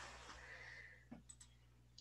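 Near silence: faint room tone with a few soft clicks about a second in and another near the end.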